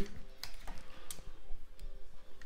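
Handling noise from a smartphone being picked up and moved while it records: a few light, sharp clicks, the clearest about half a second in, over a faint steady hum.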